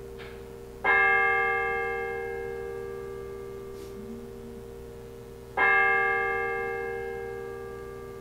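A bell struck twice, about five seconds apart, each stroke ringing out and slowly fading over a steady low tone.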